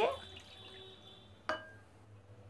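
Water poured from a measuring cup into a glass bowl, faint, with a single sharp click that rings briefly about one and a half seconds in.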